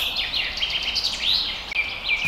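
Small birds chirping: a quick run of short, high chirps, several a second, over a faint outdoor hiss.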